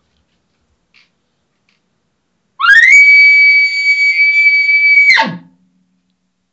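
Elk locator bugle blown on a game call: a single high, ear-piercing note sweeps up quickly, holds steady for about two and a half seconds, then drops sharply at the end. It is a non-aggressive bugle, used to find out whether a bull is nearby and will answer.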